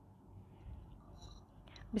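Faint low background rumble of a recording microphone, with a short breath near the end just before a woman starts speaking.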